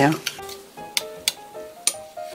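A metal spoon clinks against a small ceramic bowl three times while stirring a pomegranate-syrup dressing, over background music.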